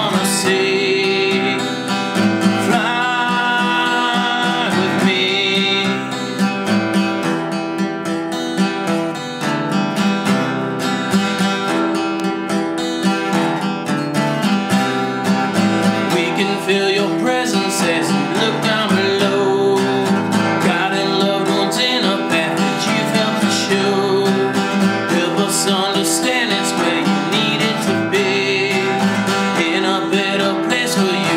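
Acoustic guitar strummed steadily in a grunge-style alternative rock song, with a man singing over it at times.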